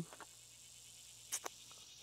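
Faint, steady chorus of insects in the background, with two quick sharp clicks about a second and a half in.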